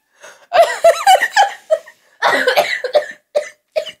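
A woman laughing hard in short bursts, breaking into coughs about halfway through.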